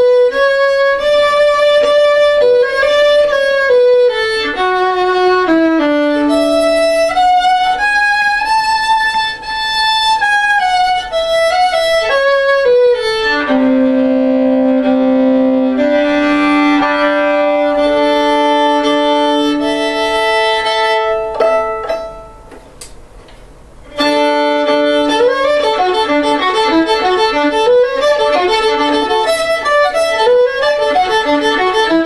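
Handmade five-string violin, strung with Prim strings plus a viola C string, played solo with the bow: a melody moving note to note, dropping to lower held notes partway through. The playing breaks off briefly about 22 seconds in, then the tune resumes.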